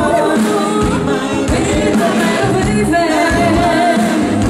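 Live dance orchestra playing a bachata, with singing over amplified guitars, keyboard and drums at a steady beat.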